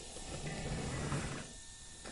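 Faint low background noise with a weak low hum and no distinct event, fading slightly near the end.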